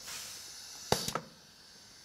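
Faint hiss of compressed air from a pneumatic valve as a cylinder on a training panel strokes forward. A sharp click comes about a second in, with two lighter clicks just after.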